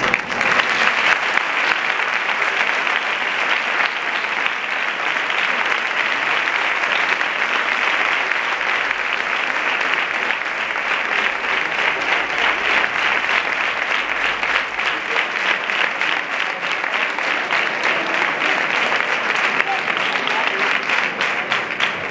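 A large audience applauding, breaking out suddenly and keeping up steadily and loudly.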